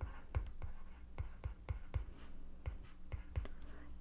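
A stylus writing on a tablet's glass screen as numbers are handwritten: an irregular run of light taps and short strokes.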